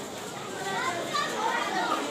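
Children's voices chattering and calling over one another in the background, many small voices overlapping.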